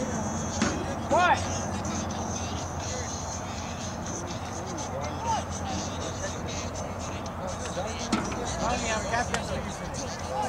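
Distant voices calling out across an outdoor soccer field over a steady background hum. One short, high shout about a second in is the loudest sound, and a few fainter calls come near the middle and near the end.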